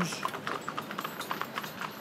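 Hooves of three Shetland ponies clip-clopping on a tarmac road as they pull a carriage: many quick, overlapping hoof strikes.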